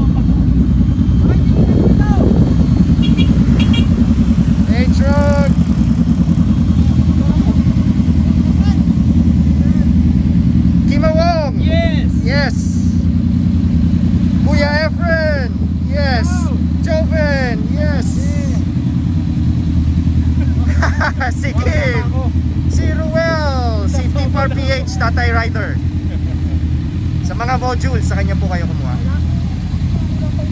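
Motorcycle engines idling steadily, with people talking over them from about eleven seconds in.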